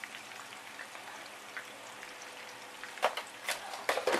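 Potato pieces frying in hot oil in a skillet: a steady sizzle with light crackling, and a few sharper crackles about three seconds in and near the end.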